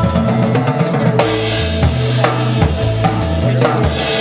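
Drum kit played live in a jazz group, irregular drum hits over a moving low bass line and a few held higher notes.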